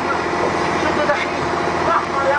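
A fishing boat's engine running steadily, with men's voices calling out over it.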